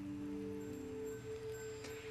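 Soft background score of a few sustained notes, entering one after another and held so that they overlap.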